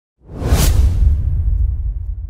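Edited transition sound effect for a title card: a whoosh that swells in suddenly just after the start, over a deep rumble that slowly fades away.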